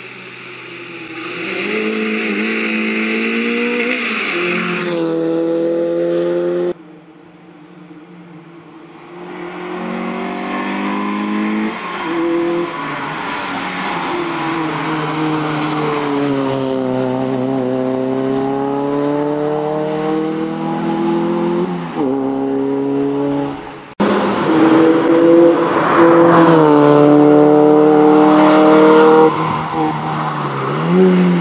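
Citroën C2 rally car's engine revving hard through tight hairpins: the pitch falls as the car brakes and slows for the corner, then climbs as it accelerates away. The sound cuts off abruptly about seven seconds in and again near 24 seconds, where it comes back louder.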